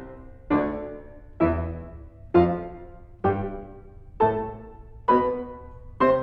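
Kawai grand piano playing a slow scale, one note to the beat, about one note a second. Each note is struck and left ringing, fading away before the next, six in all and a seventh right at the end.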